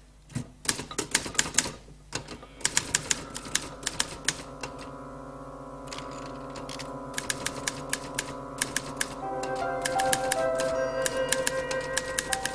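Keys of a manual typewriter struck in quick runs of clicks with short pauses between them. Soft background music with held notes comes in under the typing a couple of seconds in and grows louder near the end.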